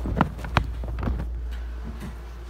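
Handling sounds: two sharp knocks about a quarter and half a second in, then a few lighter taps, over a low steady hum.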